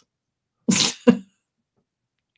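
A person sneezing once, a sudden loud burst about two-thirds of a second in, followed by a short second burst.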